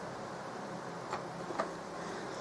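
Two faint, short clicks a little after a second in, over a low steady background hiss: a multimeter probe being taken out of a bike battery charger's output connector.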